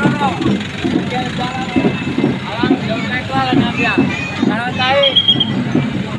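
Crowd of people talking close by as decorated vehicles and a motorcycle pass slowly, their engines running under the voices. A brief high steady tone sounds about five seconds in.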